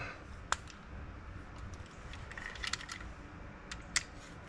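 Light clicks and taps of a screwdriver and a small bracket being handled: a sharp click about half a second in, a short run of light ticks past the middle, and another sharp click at the end, over a low steady room rumble.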